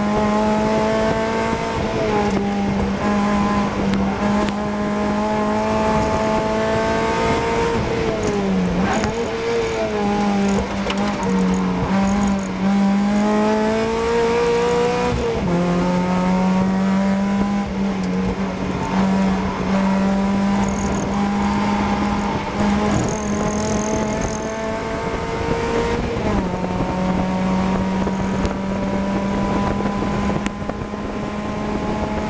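Race Mazda MX-5's four-cylinder engine heard from inside the cabin, pulling hard on track. Its pitch climbs steadily and drops back sharply several times at gear changes. About eight seconds in, the pitch falls and wavers as the car slows for a corner, then climbs again onto the straight.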